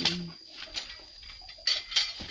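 A steady, high-pitched insect drone, with a few short rustling and clinking noises near the end from tiller parts being handled during assembly.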